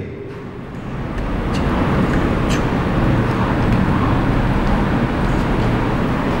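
Steady background rumble and hiss, like distant traffic, swelling over the first second or two and then holding level, with a couple of faint ticks.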